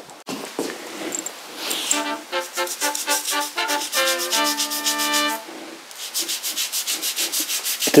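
Toothbrush scrubbing wet tile grout in quick back-and-forth strokes, about six a second. From about two seconds in, a short brass-like musical sting of a few stepped notes, ending in a held chord, plays over the scrubbing.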